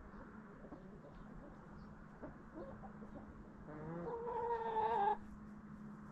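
A domestic hen calling: a few short clucks, then one long drawn-out call of about a second and a half that grows louder and stops abruptly.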